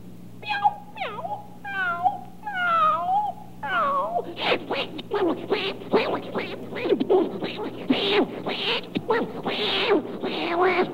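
A human imitator's voice doing a cat fight: a few drawn-out meows sliding up and down in pitch, then from about four seconds in a fast, dense tangle of yowls and spitting. A low hum of the old broadcast recording lies under the first half.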